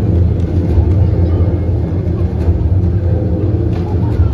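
Loud, deep, steady bass rumble from the circus show's sound system during an acrobatic act.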